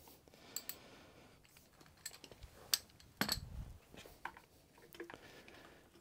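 Scattered faint clicks and light knocks of hand tools and parts being handled on top of the engine during a spark plug change, with one duller knock a little past halfway.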